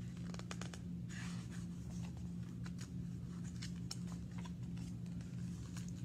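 A hardcover picture book's pages being turned and handled: soft paper rustling about a second in and scattered light clicks, over a steady low hum.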